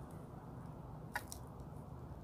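A gold-tone metal link watch bracelet being handled in the fingers: two small sharp clicks close together about a second in, over a low steady room hum.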